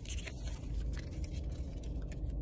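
Trading cards being slid through the hands and shuffled past one another: soft scrapes and light clicks over a low steady rumble.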